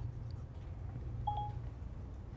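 Steady low room hum, with one short beep-like tone about a second and a quarter in.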